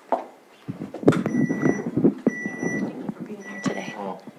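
Three steady electronic beeps about a second apart, each about half a second long, over low voices and shuffling.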